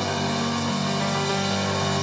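Church worship band music playing steady, sustained chords under an altar call.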